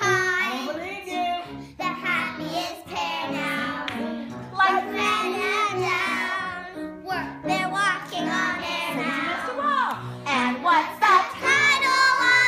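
A group of young girls singing together in unison with instrumental accompaniment.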